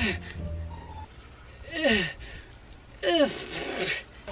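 Background music, over which a person's voice lets out three short falling, breathy cries as he sprays himself with garden-hose water.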